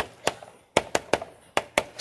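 Chalk striking and tapping on a chalkboard while writing: a series of about eight short, sharp, irregular clicks, one for each stroke.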